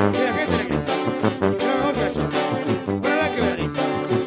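Sierreño band playing an instrumental passage: sousaphone bass line on a steady beat under strummed and picked guitars.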